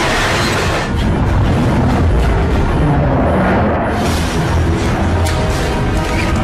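Dramatic film score mixed with loud crash effects: a continuous low rumble and booming as a jet airliner belly-lands and skids along a ship's steel deck.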